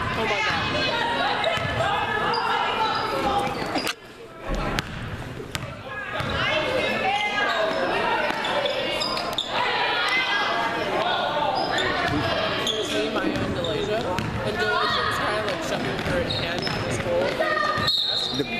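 Basketball game sounds in a large gym: the ball bouncing on the hardwood court amid spectators' and players' voices, echoing in the hall. The sound drops out briefly about four seconds in.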